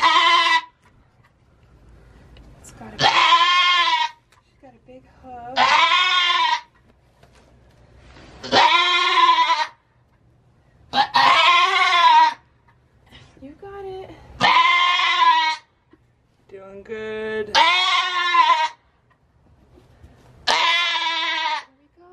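Nigerian Dwarf doe in labor bleating loudly as she pushes out a kid: eight long calls, one every two to three seconds, each rising and then falling in pitch.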